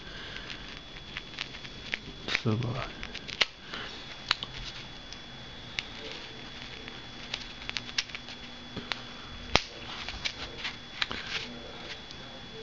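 Scattered light clicks and rubbing from hands working a small hand drill (pin vise) into EPP foam and handling the foam, with a few sharper clicks, over a faint steady high whine.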